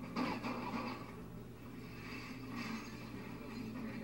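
Faint rustling of clothing fabric being handled, strongest at the start, over a steady low hum.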